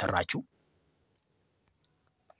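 A voice finishing a few words in the first half-second, then near silence with a single faint click near the end.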